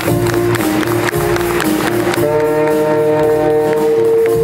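A junior high jazz band playing a swing tune, with saxophones over the rhythm section. Sharp hits punctuate the first half, and a long held note sounds from about halfway through.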